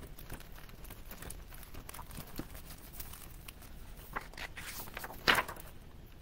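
A hardcover picture book being shaken by hand: a run of soft paper rustles and small clicks from the pages and cover. A louder rustle about five seconds in as a page is turned.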